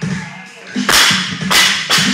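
Loaded barbell with black rubber bumper plates, 205 lb, dropped from the shoulders onto a wooden lifting platform. It lands with a loud crash and bounces into a second crash about two-thirds of a second later, then gives a smaller knock as it settles. Background music with a steady beat plays underneath.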